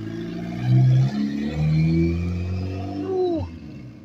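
Turbocharged Honda D16Y8 1.6-litre four-cylinder in a Civic coupe accelerating away, with turbo spool heard in the climb. The engine note rises steadily, then drops sharply about three seconds in.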